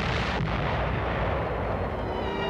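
An atomic bomb explosion on an old newsreel soundtrack. It is a sudden blast, then a rumbling roar whose hiss dies away over about two seconds.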